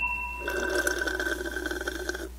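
Liquid being poured, with a gurgling sound starting about half a second in, over a steady low hum.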